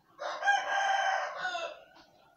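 A rooster crowing once: a single long, high-pitched call that lasts about a second and a half and tails off near the end.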